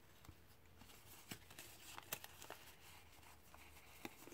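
Near silence, with a few faint crinkles and rustles of folded patterned paper being pressed and handled in the hands.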